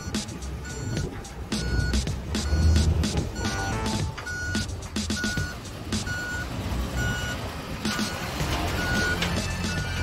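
Dump truck reversing: its backup alarm gives a steady high beep a little more than once a second over the low running of its diesel engine, which swells about three seconds in.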